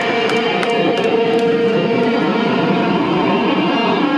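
Electric guitar played loud through an amplifier, ringing out on sustained notes.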